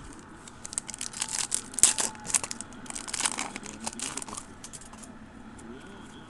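Foil wrapper of a trading-card pack crinkling and tearing as it is opened: a quick run of crackles and rustles that dies away after about four and a half seconds.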